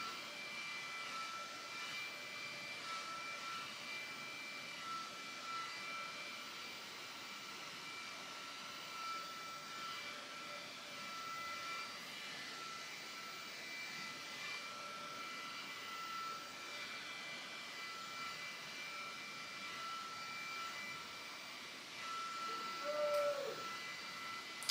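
Small handheld battery-powered fan running steadily: a faint whir of air with a thin, high motor whine that wavers on and off.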